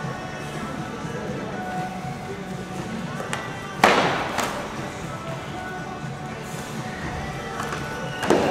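Background music echoing in a large gym, with a sharp crack about four seconds in and a smaller one just after, as the sparring swords strike in an exchange.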